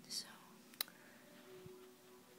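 A short, soft breathy whisper from a person, then a single sharp click a little under a second in, over faint steady hum.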